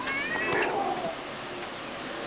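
A high-pitched shout from a person at the ground, short and slightly rising, then a lower falling call just after, over open-air wind noise on the microphone.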